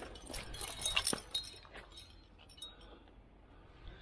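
Metal climbing gear racked on a harness, carabiners and cams, clinking and jangling as the climber moves, busiest in the first two seconds and then dying down to a few clinks.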